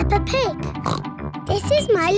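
Bright children's cartoon theme music with a child's voice giving a pig snort just after the start; near the end the voice begins to speak over the music.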